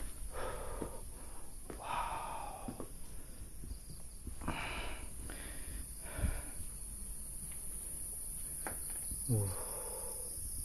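Steady high-pitched chorus of crickets, with a few irregular scuffs and rustles close by.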